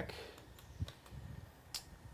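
A few faint clicks from a laptop being operated, over a quiet background.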